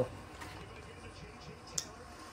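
Faint handling of a cloth towel as it is picked up, with one short click near the end.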